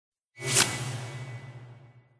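A whoosh sound effect for a logo reveal: it swells in about a third of a second in, peaks sharply, then fades away over about a second and a half with a low hum under it.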